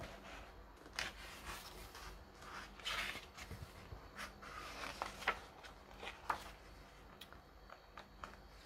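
Pages of a large paperback book being handled and turned: soft paper rustles and a few light clicks, quiet overall.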